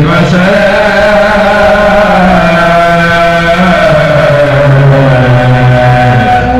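Islamic dhikr chanting in Arabic: voices holding long, slowly gliding notes without a break, a low sustained line under a brighter melodic one.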